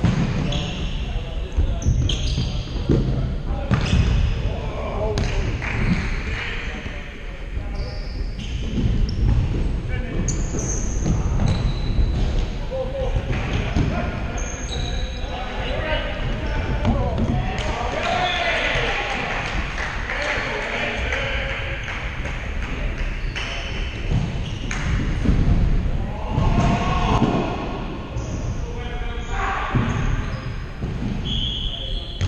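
Futsal ball being kicked and bouncing on a wooden sports-hall floor, with sharp knocks that echo in the large hall, short high squeaks from players' shoes on the court, and players shouting to each other, loudest in the middle and again near the end.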